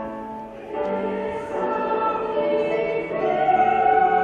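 Mixed-voice school choir singing sustained notes in parts, swelling louder about three seconds in.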